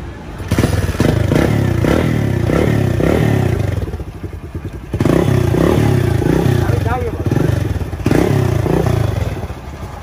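A Kawasaki Caliber's 115 cc single-cylinder four-stroke engine starts about half a second in and is revved in short repeated throttle blips. Its level eases off briefly twice, near the middle and near the end.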